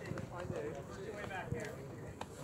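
A runner's footfalls on a synthetic running track: a faint, quick patter of steps as he runs past.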